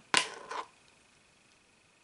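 A brief whirr of an axle spun by hand in the bearings of a Pro-Line Pro Fusion SC rear hub carrier, turning freely. It starts with a sharp click and fades out within about half a second.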